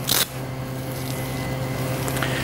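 A brief rustle as the band is wrapped around the wrist, then a steady electrical hum from the equipment in a cardiac catheterization lab, with a faint high tone over it.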